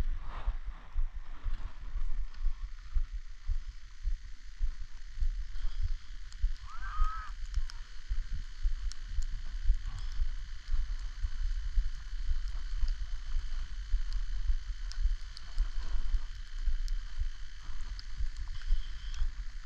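Wind buffeting the microphone of a camera worn by a skier gliding downhill, a gusty low rumble, over a steady hiss of skis running on groomed snow. A brief high-pitched, wavering sound comes about seven seconds in.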